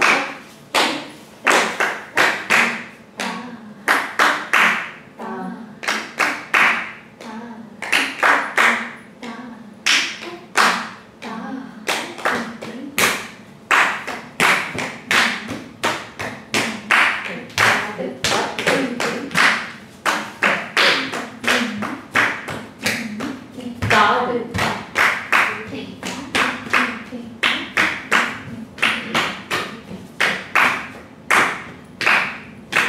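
Sollukattu, the spoken rhythmic syllables of Indian classical dance, recited in time, punctuated by rapid sharp percussive strikes that keep the beat, several a second in clusters.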